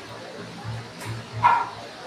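A dog barks once, a single short bark about one and a half seconds in, over background music with a steady low beat.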